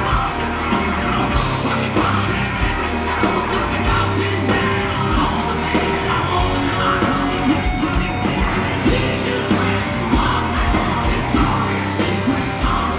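Live hard rock band playing at full volume: drums on a steady beat, electric guitar and bass, with the lead singer yelling and singing into the microphone.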